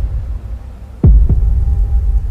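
Cinematic trailer sound effect: a deep boom about a second in whose pitch drops fast, with a smaller second drop just after, over a sustained low rumble and a faint steady high tone.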